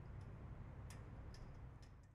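Near silence: a faint low rumble with a few faint, sharp ticks.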